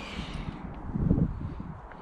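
Handling noise and footsteps of someone walking with a handheld camera, with leaves brushing past it; the loudest part is a low thump about a second in.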